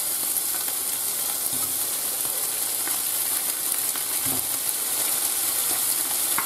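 Whole prawns sizzling steadily in hot fat in a frying pan.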